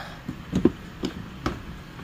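Plastic headlamp assembly of a Hyundai Porter II being pulled out of its mounting by hand, giving three short clicks and knocks about half a second apart, the first the loudest.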